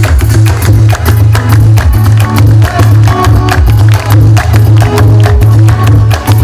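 Live band playing at full volume: a heavy bass line with steady, driving percussion and melodic instruments over it.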